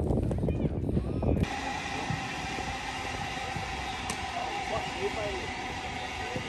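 Voices of people chatting, cut off about a second and a half in by a passenger train running past, a steady rumble with a whine held on two pitches.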